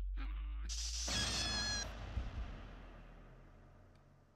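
Sound effects for an animated logo. First come a couple of short squeaky cries. About a second in there is a sudden crash with a bright, glassy ringing, which fades away over about three seconds.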